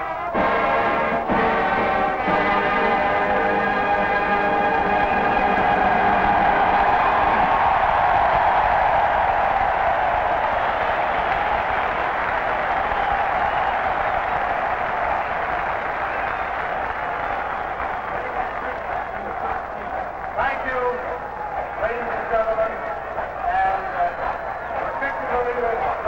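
A marching band ends a piece with held chords in the first few seconds. A stadium crowd cheers over it, and the cheering slowly thins out into a mix of crowd voices.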